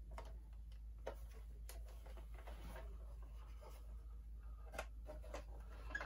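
Faint scattered clicks and light handling noise from hands turning and working the parts of a vintage Kenner Slave-1 hard-plastic toy ship, over a steady low hum.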